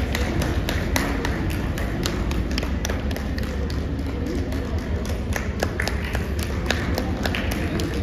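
A quick, irregular run of sharp taps, several a second, over a steady low hum.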